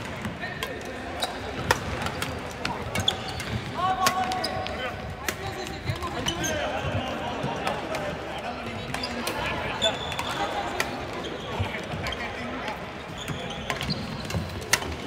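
Badminton rackets striking shuttlecocks: sharp, irregular clicks from several courts at once, echoing in a large hall over a murmur of players' voices.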